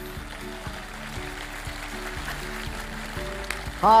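Studio audience applause, a steady patter of clapping hands, with background music playing under it. A man's voice comes in right at the end.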